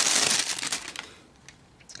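Plastic packaging crinkling as a phone is handled out of its wrapping. The crinkling runs for about a second, then dies away to quiet, with a light click near the end.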